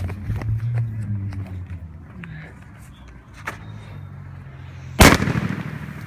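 A firework artillery shell bursting inside a plastic bottle: one sharp, very loud bang about five seconds in, which destroys the bottle.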